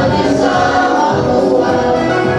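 A mixed group of young men and women singing together in unison into handheld microphones.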